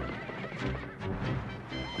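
Film score music playing over a herd of horses galloping, with hoofbeats and a horse neighing.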